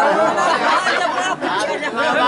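Several voices talking loudly over one another.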